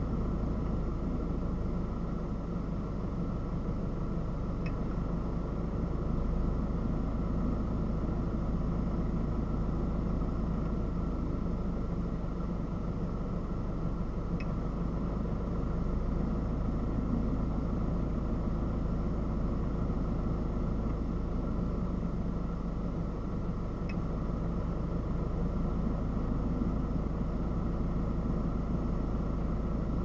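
Steady hum of a stationary car idling, heard from inside the cabin, with three faint ticks about ten seconds apart.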